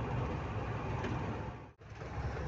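Steady engine and road rumble inside a moving truck's cab, briefly cut off near the end.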